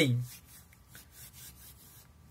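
A spoken word trails off at the start. Then come faint, soft rubbing sounds of hands rubbing together.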